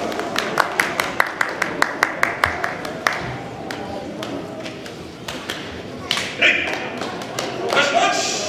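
Hand clapping just after a sumo bout is decided: a quick, even run of claps, about five a second, for roughly three seconds before it dies away, with a short shouted call about six and a half seconds in.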